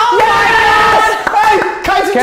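Several people shouting and cheering a goal, with long drawn-out yells.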